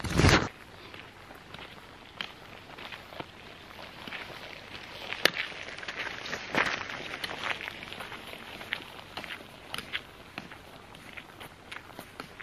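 A loud handling knock at the start, then footsteps and trekking-pole taps on a gravel track. They are loudest as the walker passes close by, about five to seven seconds in, then grow fainter as he moves away.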